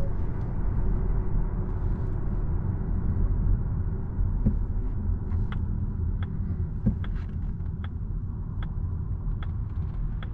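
Low road and tyre rumble inside the cabin of a Volvo EX30 electric car as it slows on a city street, with a couple of soft thumps from the road surface. From about halfway, the turn-signal indicator ticks steadily, a little faster than once a second.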